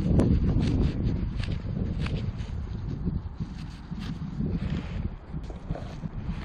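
Wind buffeting the microphone as an uneven low rumble, with the rustle and scuff of gloved hands handling a small lead object and of clothing.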